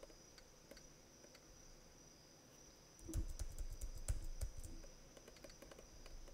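Stylus tapping and clicking on a tablet or pen-display screen during handwriting: faint scattered clicks, with a cluster of louder, deeper knocks and taps about three seconds in. A faint steady high whine lies beneath.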